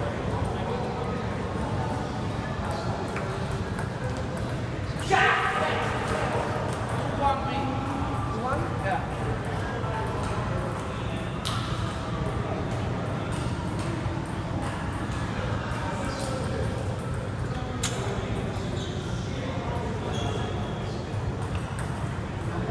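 Table tennis hall ambience: a steady low hum and background voices, with scattered sharp clicks of ping-pong balls hitting paddles and tables, the loudest about five seconds in.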